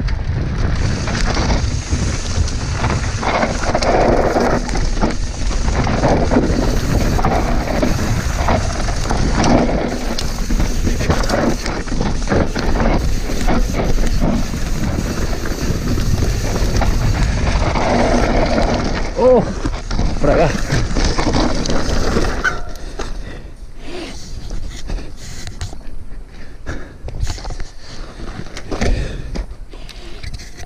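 Enduro mountain bike descending a dry dirt trail: wind rush on the microphone and the tyres and drivetrain rattling over the ground. About 22 seconds in, the rush drops sharply and leaves quieter clicks and rattles.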